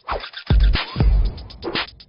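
Short electronic music sting for a logo ident, with record-scratch effects and two heavy bass hits about half a second apart.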